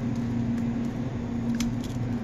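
A person chewing a mouthful of tuna salad sandwich with Miracle Whip, a few faint wet clicks over a steady low hum.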